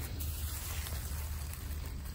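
Chopped corn silage rustling and pattering softly as a hand stirs it and lets it fall, over a steady low rumble.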